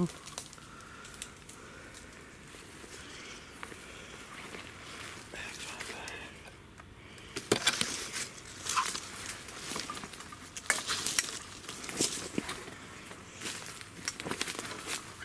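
Footsteps crunching through dry leaf litter and twigs, with brush rustling, starting about halfway in after several seconds of quiet woodland air.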